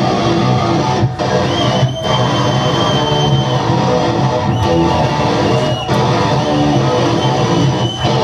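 A rock band playing live and loud: electric guitars, bass and drums, the riff stopping briefly several times, with a held high guitar note early on.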